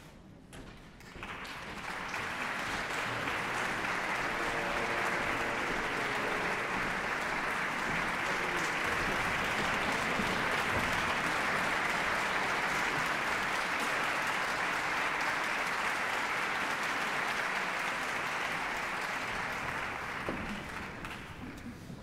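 Audience applauding in a large concert hall. The applause starts about a second in, holds steady and dies away near the end.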